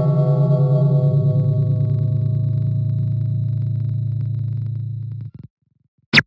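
A sustained, low musical tone with many overtones and a slight pulsing, like a held synth or gong-like note, slowly fading and then cutting off suddenly about five seconds in.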